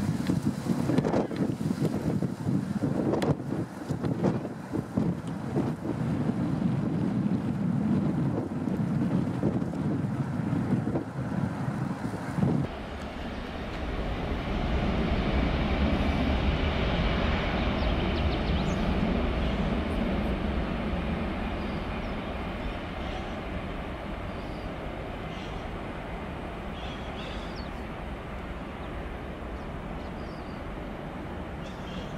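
Jet airliner engines heard from beside the runway during a landing roll, with wind buffeting the microphone. About twelve seconds in the sound cuts to another jet's takeoff: a deep rumble that swells and then slowly fades as the plane departs.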